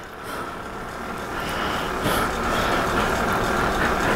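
A steady rumble with hiss, growing gradually louder.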